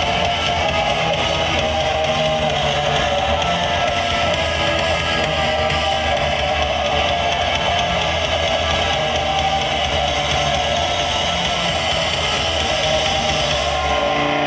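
Live mathcore band playing loud: electric guitar, bass guitar and drums together in a dense, unbroken wall of sound.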